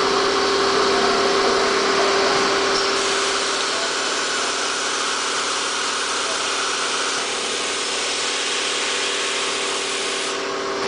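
Automated foil cutting and separation machine running: a steady hum at one pitch over a constant hiss, unchanging throughout.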